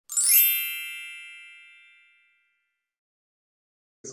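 A bright, high chime sounded once as a logo sting, ringing with many overtones and fading away over about two seconds.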